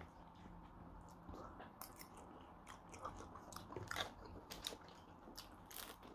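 Faint close-up chewing with the mouth closed: irregular soft crunches and wet mouth clicks.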